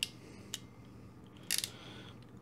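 Ratcheting crimping pliers clicking while crimping a Dupont terminal: a sharp click at the start, a faint one about half a second in, then a quick run of clicks about a second and a half in.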